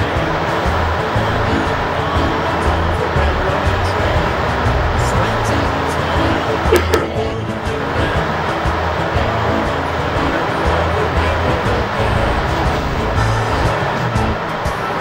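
Background music with a low bass line that changes note every second or so, over a steady rushing noise.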